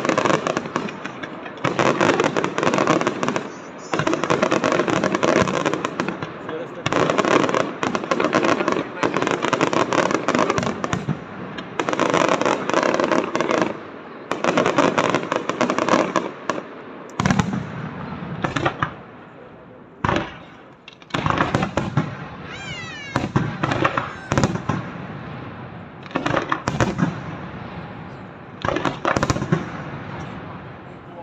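Aerial fireworks display: shells bursting in dense barrages of bangs and crackle, broken by short pauses, with a longer lull a little past the middle before the barrages resume.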